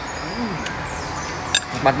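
A man's short 'mm' hum of enjoyment while eating, with a brief click about a second and a half in and a word starting near the end.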